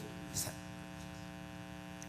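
Faint, steady electrical mains hum from the sound system during a pause in the speech, with one short spoken word about half a second in.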